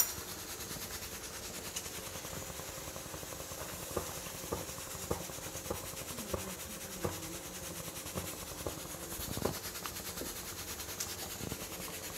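Soup boiling in a stainless-steel pot on a gas burner: a steady hiss with scattered small pops and knocks.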